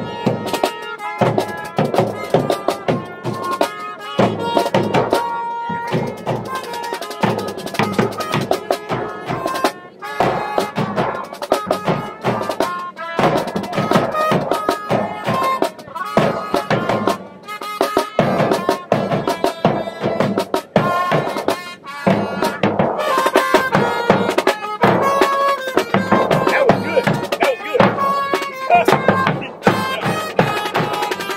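A small street band playing: trumpet over a snare drum and a bass drum, with held trumpet notes over a steady drum beat.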